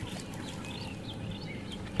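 Faint bird calls in the bush: many short chirps and whistles over a low, steady background hum.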